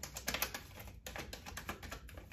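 A deck of tarot cards being shuffled by hand: a run of quick, light clicks of card on card, densest in the first half second, then scattered.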